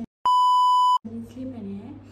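A loud, steady electronic bleep at one pitch, lasting about three-quarters of a second and cut in with dead silence on either side, the standard censor-style tone. A woman's speech picks up again after it.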